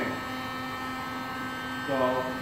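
Electric heat gun running steadily, a constant fan hum, blowing hot air onto a plastic bumper cover to soften it for reshaping.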